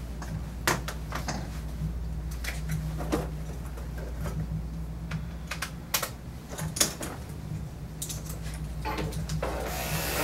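Scattered clicks and clacks of grooming tools being handled and picked up from a pegboard, over a steady low hum.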